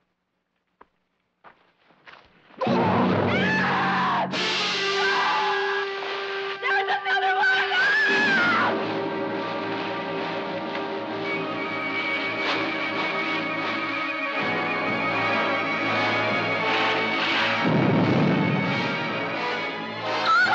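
Suspenseful television score: a few faint clicks, then about two and a half seconds in a loud burst of music comes in and carries on, with sliding, wavering pitches over low held notes and a long high held tone in the middle.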